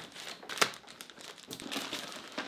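Plastic courier mailer bag crinkling and crackling as it is handled by hand to be opened, in irregular bursts with a sharper crackle about half a second in.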